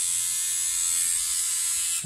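MicroTouch Solo rechargeable electric shaver running idle in the hand with a steady high-pitched buzz. It is sold as very quiet, but it is audibly not quiet.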